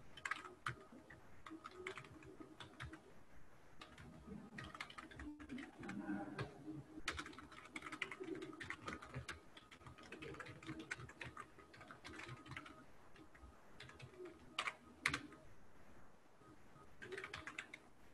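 Typing on a computer keyboard: a steady run of quick, faint key clicks, with a couple of louder keystrokes about fifteen seconds in.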